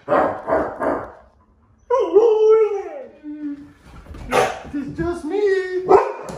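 Huskies vocalising: three short rough woofs at the start, then two long drawn-out howling calls, the first sliding down in pitch, the second near the end holding fairly level.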